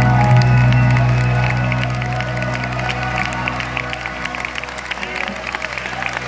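A live rock band holds a long sustained chord that slowly fades, while audience clapping and cheering build up under it.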